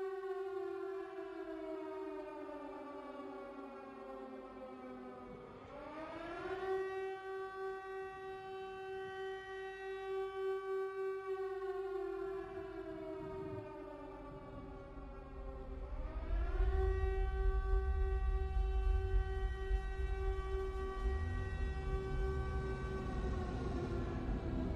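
Air-raid siren winding down slowly, then quickly winding back up and holding its high pitch, a cycle that happens twice, over a steady low drone. A deep rumble comes in about two-thirds of the way through.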